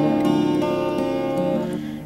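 Instrumental passage of a gentle song: a twelve-string acoustic guitar plays held, ringing chords that fade down near the end.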